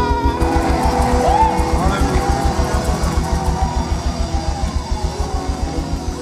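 Live church praise band playing an upbeat groove without singing: a steady, fast drum and bass beat with guitar, getting a little quieter toward the end.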